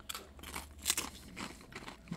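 Tortilla chip with queso crunching as it is bitten and chewed: several short crisp crunches, the loudest about a second in.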